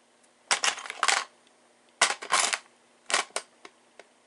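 Small metal tools rattling and clinking inside a clear plastic tub as a hand rummages through them, in three short bursts.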